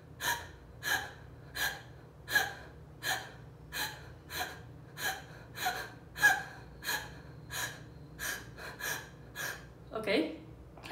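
A woman's sharp, shallow gasps through an open mouth, about fifteen of them at roughly one and a half a second: the deliberate shallow breathing of the Alba Emoting fear pattern.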